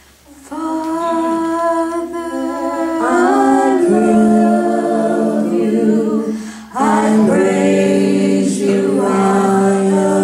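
Three women's voices singing together unaccompanied, in slow, long-held notes that begin about half a second in, with a short pause for breath about seven seconds in.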